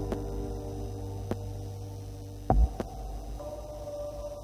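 A very low, steady electronic drone with faint held tones above it, fading slowly: the sustained tail of synthesizer music. A dull low thump comes about two and a half seconds in, with a few light clicks.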